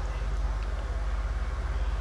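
Steady low mechanical rumble and hiss of a greyhound track's lure running along its rail toward the starting boxes just before they open, with no sharp bangs.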